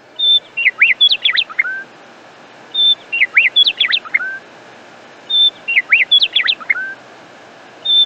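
A songbird's short song phrase, a brief held high whistle followed by several quick downward-sliding notes and a low up-turned note at the end. The same phrase repeats about every two and a half seconds, over a faint steady hiss.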